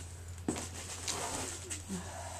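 Quiet room with a steady low hum, one soft knock about half a second in, and faint handling sounds of items being moved on a desk.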